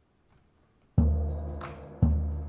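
A deep, pitched drum is struck once about a second in and left to ring and fade, with a brief high hiss over it; the next stroke lands right at the end, a slow beat of about one stroke a second.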